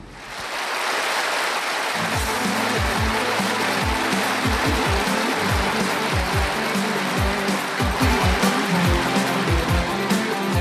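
A band's song starting: a noisy swell rises over the first second, then a steady beat of deep thumps comes in about two seconds in, with electric guitar playing.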